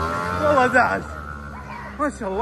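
A person's voice in one long drawn-out call that sweeps up and breaks off about a second in, over a low steady hum.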